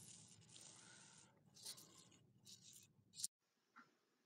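Near silence: faint room tone with a few soft, brief clicks.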